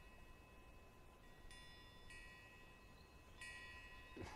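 Near silence: faint, high, steady chime-like tones that come and go several times, starting and stopping abruptly, over a faint constant tone.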